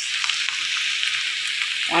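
Sliced mushrooms sautéing in olive oil in a nonstick wok give a steady sizzle while a silicone spatula stirs them.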